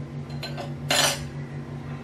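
A steel spoon clinking against stainless steel utensils: a light tick, then a short clatter about a second in, over a steady low hum.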